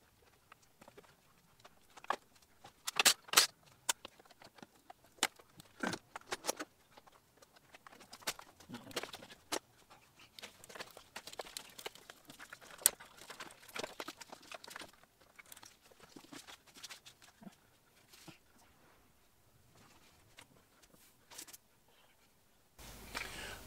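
Scattered, irregular clicks, taps and light metal clinks of metal brake lines and their fittings being handled and moved around the proportioning valve, with a lull near the end.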